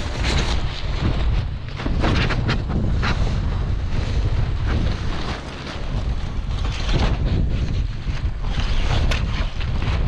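Wind buffeting the microphone, with repeated crinkling and flapping of an inflatable kitesurfing kite's fabric canopy as it is flipped over.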